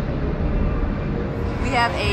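Steady low background rumble, with a person's voice starting near the end.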